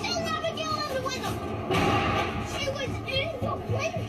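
A puppy yelping and howling in short cries that rise and fall in pitch, mixed with overlapping voices.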